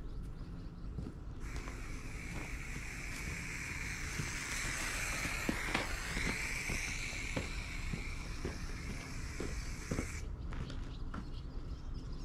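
Aerosol spray paint can spraying in one continuous hiss of about nine seconds, starting about a second in and cutting off sharply, as a line is painted on the ground. Light footsteps are heard under it.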